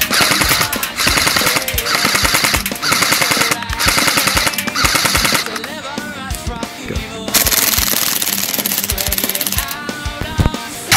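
Airsoft submachine gun (an MP5-style replica) firing rapid full-auto bursts: five short bursts, a pause of about two seconds, then one long burst near the end. Rock music plays underneath.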